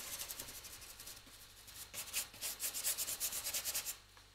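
A paintbrush scrubbing oil paint onto a painting board in quick, short back-and-forth strokes, a dry scratchy rubbing. The strokes get louder and faster in the second half, about five a second.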